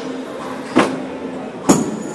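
Two short, sharp knocks about a second apart, over music playing steadily in the background.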